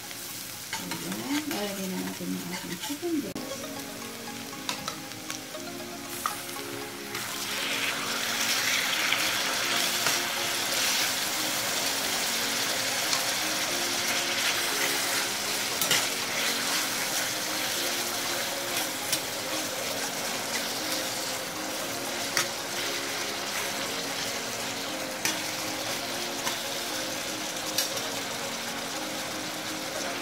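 Garlic and onion sizzling in hot butter in a pan, stirred with a slotted metal spatula. About seven seconds in, raw chicken breast pieces go in and the sizzling turns much louder and stays loud, with light clicks and scrapes of the spatula against the pan.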